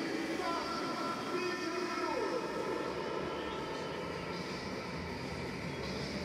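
Steady stadium background noise with faint, indistinct voices.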